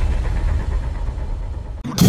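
A deep, low rumble that slowly fades, then cuts out briefly just before a drum kit and cymbal crash come in at the very end.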